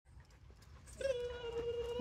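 A dog whining: one steady high-pitched tone that starts about halfway through and is held for about a second, sinking slightly in pitch, over a low rumble.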